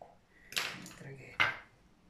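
Small hand tools being handled on a tabletop: a short scraping rustle about half a second in, then one sharp click, the loudest sound, as a tool is knocked against or set down on a hard surface while a paintbrush is picked up.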